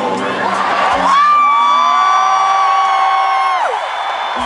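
Live rock concert sound with crowd cheering, then a long high shout held on one pitch for about two and a half seconds that slides down as it ends.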